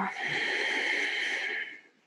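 A woman's long audible exhale, a steady breathy rush lasting about a second and a half. It is a paced breath timed to an abdominal exercise.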